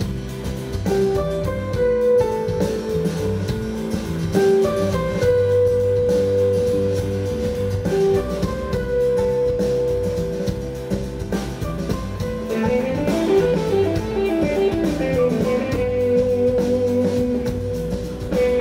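Live band playing an instrumental break: guitars over a drum kit, with long held guitar notes and a run of sliding, bending notes about two-thirds of the way through.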